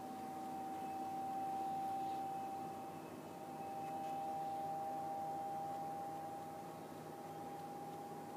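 Quiet room tone: a steady high-pitched whine with fainter steady tones below it, over a low hiss, swelling and fading gently. The marker on the toothpick makes no distinct sound.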